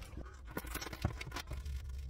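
Faint handling noise of the shrink-wrapped frozen pizza and its packaging: scattered light ticks and scratches over a low steady hum.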